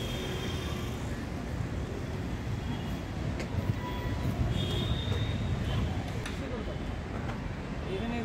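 Steady low rumble of background noise with indistinct voices.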